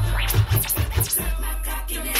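Hip hop music being scratched on a Numark DJ controller: a quick run of short back-and-forth scratch strokes in the first half, with the steady bass line broken up while they last.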